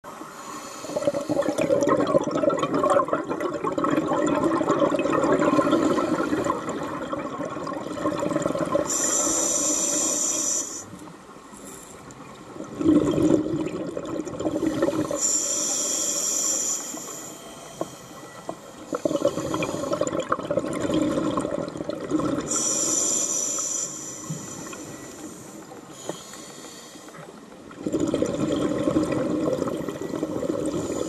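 Scuba diver breathing underwater through a regulator: long exhales of bubbling alternate with three short hissing inhales, one about every six to seven seconds.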